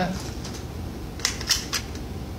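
Three short metallic clicks about a quarter second apart from the action of a Keystone Cricket single-shot bolt-action .22 rifle as it is handled.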